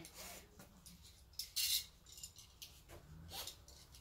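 An army-issue web belt being handled: a few short rustles and clicks of the strap and its buckle, the loudest about a second and a half in.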